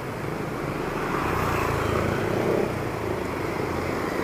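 Steady wind and road rumble from a bike ride along a street, with motor traffic around; it grows a little louder in the middle.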